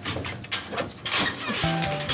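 Background music with a run of short knocks and clunks as a wooden door is pushed open and people step through the doorway.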